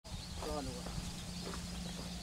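A short voice about half a second in, over a steady low rumble of wind on the microphone, with faint high bird calls throughout.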